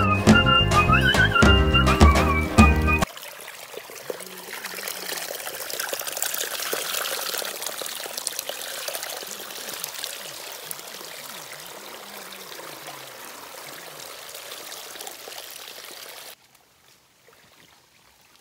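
A short run of music with a melody that cuts off suddenly about three seconds in, followed by shallow water running and trickling among rocks, loudest early and slowly fading. It stops abruptly near the end, leaving a quiet background.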